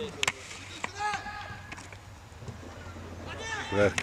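A football kicked with a sharp double thud about a quarter second in, followed by players' voices calling faintly across the pitch.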